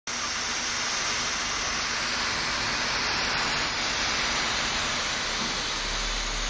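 Steady hiss of rushing air.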